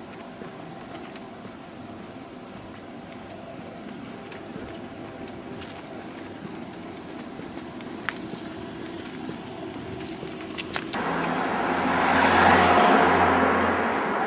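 Steady city street traffic hum, then a road vehicle passes close by about eleven seconds in, rising to its loudest a little later and fading off.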